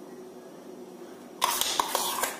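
A faint steady hum, then about a second and a half in a short scraping clatter with a few sharp clicks: a metal spoon scraping and knocking against a bowl and glass as whipped dalgona coffee is spooned onto the milk.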